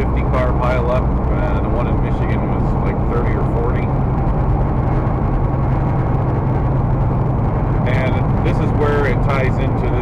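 Steady low drone of a semi truck's diesel engine and road noise heard inside the cab while driving.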